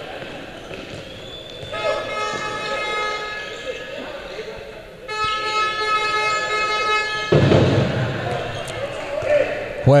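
Two long, steady horn blasts of about two seconds each, one after the other, ringing through a large sports hall, with a ball bouncing on the court.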